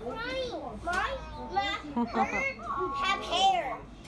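A young girl's high voice chattering, with a laugh about two and a half seconds in.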